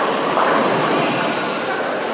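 Steady rumble of a busy bowling centre: bowling balls rolling down the lanes, with pins and pinsetter machinery blended into an even din.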